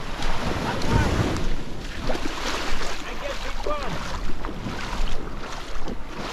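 Small waves washing up and running back on a sand beach, with wind buffeting the microphone, strongest about a second in.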